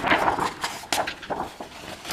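Stiff card pages of a hardbound book being turned and handled, a paper rustle with a couple of sharp clicks, one at the start and one about a second in.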